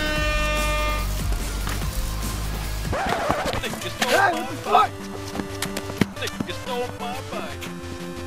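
An air horn sound effect blaring a steady held tone that stops about a second in, over a low rumble that fades out near the middle. A voice comes in after that, then background music with a steady beat.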